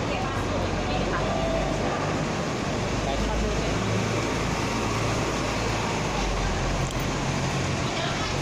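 A bus engine running close by: a steady low hum under an even wash of noise, with voices in the background.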